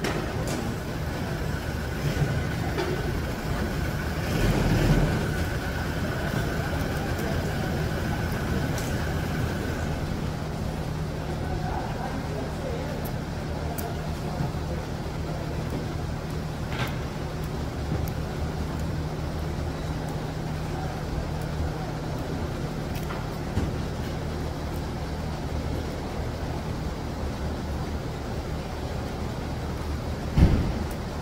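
Steady low mechanical hum of a running machine, with a thin high whine over the first third, and a few faint small metal clicks as free-wheel hub spring and clip parts are handled and fitted by hand.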